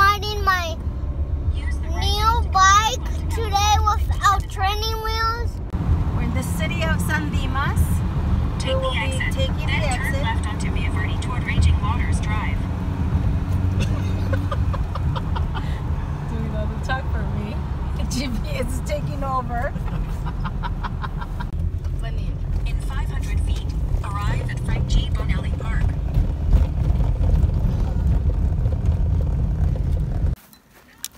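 Steady low road and engine rumble heard inside a car cabin moving at freeway speed, with faint voices over it. For about the first five seconds a person's voice is prominent over a quieter car hum, before the rumble takes over.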